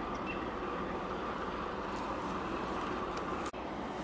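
Steady outdoor harbour-side background noise, a broad rumble like wind and distant traffic, broken by a brief dropout about three and a half seconds in.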